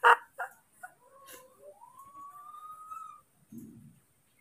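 A newborn baby monkey calling: a faint, long cry that rises slowly in pitch for about a second and a half, after a few shorter cries. It follows the tail end of a person's laughter, and a soft low bump comes near the end.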